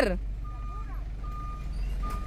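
Kia pickup truck's reverse warning beeper: three steady half-second beeps about three-quarters of a second apart, over the low rumble of the idling engine.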